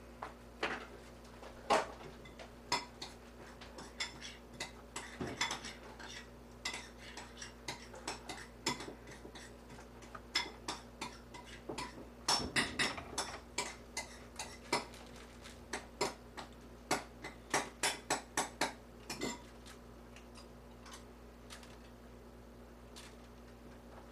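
Kitchen knife chopping food on a cutting board: irregular sharp knocks of the blade striking the board, with a quicker even run of about three cuts a second near the end. A faint steady hum runs underneath.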